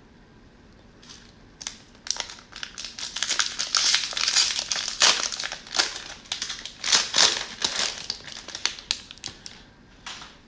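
Cellophane wrapper of a 2021 Donruss cello pack of trading cards being torn open and crinkled by hand, a dense run of crackling that starts about a second and a half in and lasts several seconds, tapering off near the end as the wrapper is pulled off the card stack.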